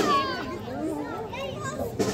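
Crowd of spectators talking and calling out at once, many voices overlapping, some of them high like children's.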